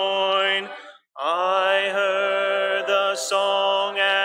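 A cappella hymn singing led by a male voice: slow, long-held notes, broken by a short breath about a second in.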